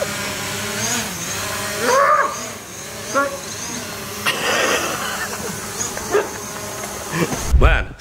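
Small quadcopter drone hovering close by, its propellers giving a steady buzzing hum whose pitch wavers slightly, with brief voices over it. A loud low thump near the end.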